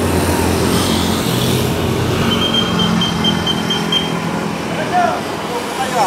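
Street traffic: a motorcycle passing close by with its engine running, over road noise from other vehicles. A thin, steady high tone sounds for about a second and a half in the middle.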